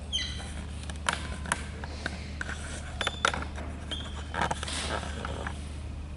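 Dry-erase marker drawing on a whiteboard: short high squeaks from the tip, sharp taps as it meets the board, and scratchy strokes, over a steady low hum.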